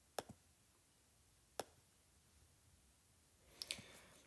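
Faint clicks over near silence: fingertip taps on a tablet touchscreen, a close pair just after the start, a single one at about a second and a half, and a short cluster near the end.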